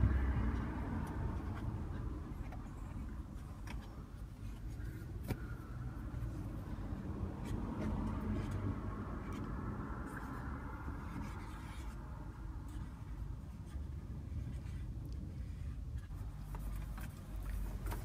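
Faint rubbing and handling noise as a baby wipe is worked over the plastic buttons and dials of a car's climate-control panel, with a few light clicks, over a low steady rumble.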